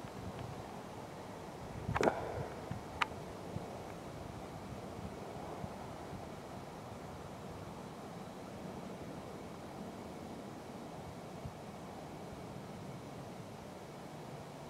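Steady faint outdoor background noise, a low hiss and rumble with no clear source, broken by a sharp click about two seconds in and a smaller, higher click about a second later.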